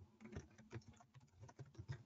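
Faint typing on a computer keyboard: a run of quick, irregular clicks.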